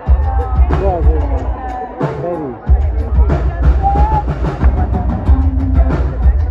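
Live pop band playing a song through a concert PA, with a heavy pulsing kick drum and bass and a woman singing over it.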